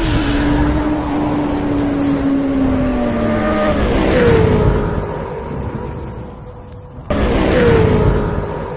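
Motorcycle engine revving as a sound effect, its pitch sliding down over the first few seconds and sweeping lower again about four seconds in. It dies down, then a second loud rev starts abruptly about seven seconds in.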